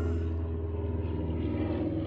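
Outin Nano portable espresso machine's pump running with a steady low hum as it pushes espresso out of the capsule into the cup.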